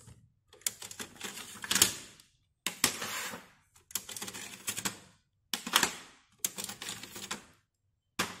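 Hard plastic ink cartridges being handled, clicking and rattling in about five short runs of quick clicks.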